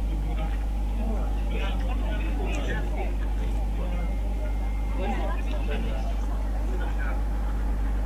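Several people chatting at a distance, over a steady low hum and rumble that runs without a break.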